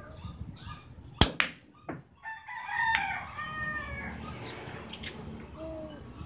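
Two sharp clacks of billiard balls about a second in, cue on ball then ball on ball, with a lighter click just after. Then a rooster crows for about two seconds.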